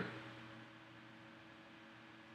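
Near silence: a faint steady electrical hum with low hiss from the recording chain.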